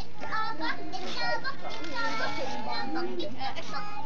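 A group of young children talking and calling out over one another in high, excited voices, with no break.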